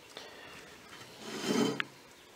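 A quiet pause with a faint click, then a short voiced hum with a breath in the second half, like a man's hesitation 'mm' before he speaks again.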